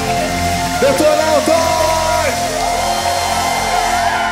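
Live rock band playing, with electric guitar over steadily held chords and some notes gliding in pitch.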